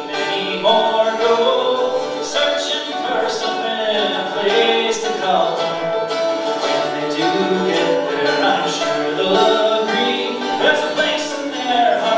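A live rock band playing a song: sung vocals over acoustic and electric guitars and a drum kit, with steady drum and cymbal strokes throughout.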